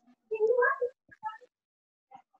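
A cat meowing once, one rising call of about half a second, picked up by a participant's microphone on a video call.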